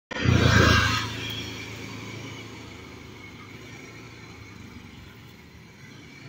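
A motor vehicle's engine, loudest in the first second, then fading away over the next couple of seconds into a steady low street hum.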